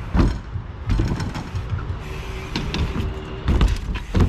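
BMX bike tyres rolling and rattling over skatepark concrete and ramps, with several heavy thuds of wheels hitting the ramps, the strongest near the end as a rider comes off his bike.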